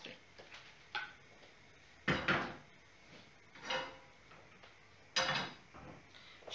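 Kitchen handling sounds: a frying pan and utensils being knocked and set down, with a small click about a second in and louder clunks about two seconds in and near the end.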